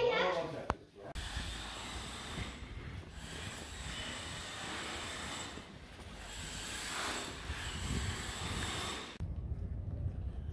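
Wind blowing across the camera microphone outdoors: a steady rushing noise with a low rumble. It opens after a brief voice and a click, and changes abruptly near the end to a gustier low rumble.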